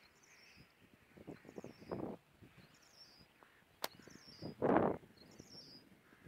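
A bird calls over and over, a short high chirp about once a second. Under it are bursts of rustling noise, the loudest about three-quarters of the way in, with a sharp click just before it.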